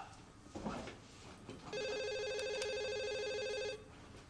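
Office desk telephone ringing: one electronic ring about two seconds long, starting a little before halfway and cutting off shortly before the end.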